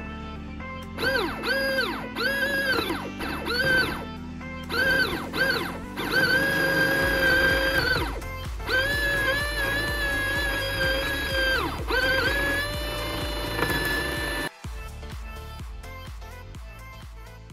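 Small brushed DC motor whining as it is switched on in short bursts, each one rising in pitch as it spins up and falling as it coasts down, then run for a few seconds at a time at a steady pitch, turning a second motor through a tube shaft with universal joints. Background electronic music with a steady beat plays throughout.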